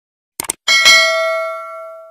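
Subscribe-button animation sound effects: a quick double mouse click about half a second in, then a bright bell ding that rings on and slowly fades.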